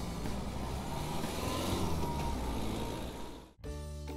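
Plastic toy dump truck's wheels rolling along a wooden railing, a steady rolling noise that cuts off suddenly about three and a half seconds in.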